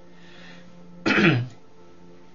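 A man clears his throat once, briefly and loudly, about a second in, over a faint steady hum of background music.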